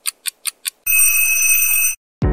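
Digital-clock sound effect: fast, even ticking at about six ticks a second, then a loud, steady, high electronic alarm tone for about a second that cuts off abruptly.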